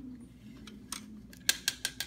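A run of sharp plastic clicks and taps from a donkey-shaped cigarette dispenser being handled as its tail lever is worked. One click comes about a second in, and a quick cluster follows, the loudest about one and a half seconds in, over a faint low hum.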